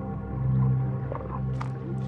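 Background music of sustained low tones held steadily, with a faint brief click near the end.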